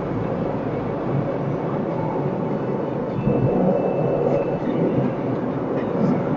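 Steady road and tyre noise with engine hum inside a car cruising on an expressway.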